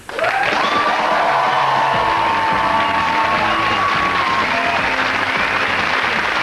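End-credits theme music playing over a studio audience clapping, with long held notes above the steady applause.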